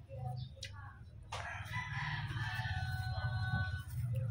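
A rooster crowing once, a single long call of about two and a half seconds beginning just over a second in, over a low steady hum.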